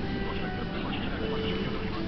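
Busy restaurant ambience: a steady murmur of indistinct voices with faint background music.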